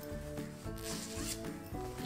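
Soft background music with held notes, over faint fabric rustling as a cloth nappy wet bag is handled and opened.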